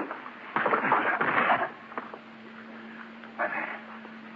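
Radio-drama sound effect of a brief scuffle: about a second of shuffling, knocking noise, then a shorter burst a few seconds in, over a faint steady hum.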